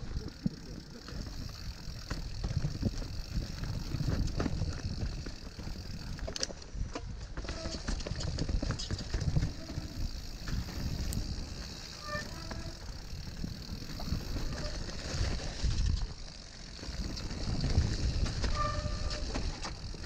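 Mountain bike riding over a rough trail: a continuous rumble with irregular knocks and rattles from the bike over uneven ground.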